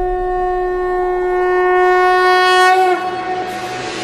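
A conch shell (shankh) blown in one long, steady note that wavers and fades about three seconds in, sounded as the opening call before a Hindu chant.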